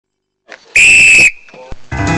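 Steam locomotive whistle giving one short, loud, steady high-pitched blast of about half a second, with steam hiss beneath it, fading off to a faint trailing note.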